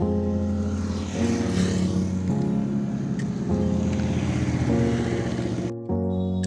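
Background music: sustained low chords that change about once a second, with a brief dropout near the end.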